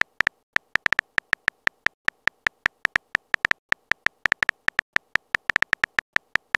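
Simulated phone keyboard tap sounds, one short high tick for each character typed into a chat message box, about six a second at an uneven typing pace.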